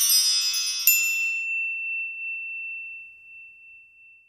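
Sparkling chime sound effect for an animated logo: a shimmer of high tinkling tones that dies away, with a bright ding just before a second in that rings on as one high tone and slowly fades out.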